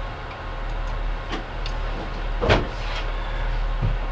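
Room tone: a steady low hum with a few faint short clicks, the clearest about two and a half seconds in.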